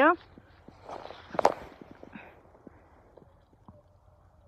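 A sharp thump about a second and a half in, followed by light, scattered footsteps on grass.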